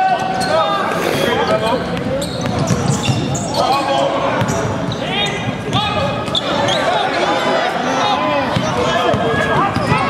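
Live basketball game in a large arena: a ball being dribbled on the hardwood court amid the voices of players and spectators calling out, with the hall's echo.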